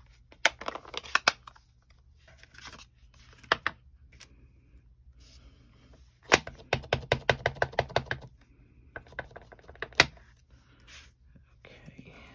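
Clear acrylic stamp block tapped quickly on an ink pad, about ten taps in two seconds midway through. Scattered plastic clicks and knocks come earlier, and one sharp click comes near the end.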